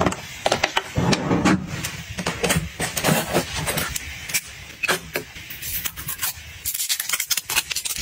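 Small cosmetic bottles being handled: a run of sharp plastic clicks, taps and light rattles as a cap and top are worked off a small blue bottle.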